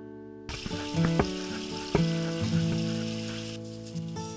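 Strummed acoustic guitar music, with a steady hiss laid over it from about half a second in until shortly before the end.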